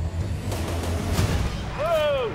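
Schöma mine locomotive running along the rails in a tunnel, a steady low rumble that fades out about a second and a half in. Just before the end comes a short, high, rising-then-falling call, voice-like.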